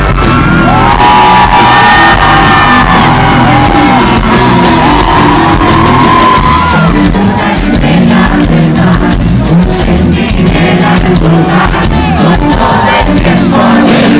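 A rock band playing live and very loud, with electric guitar, bass guitar, drums and keyboards, and singing over them.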